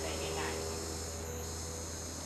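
Outdoor ambience: a steady high-pitched drone over a constant low rumble, with faint voices in the first half second.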